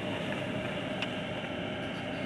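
Steady rush of hurricane-force wind and rain, with a faint click about a second in.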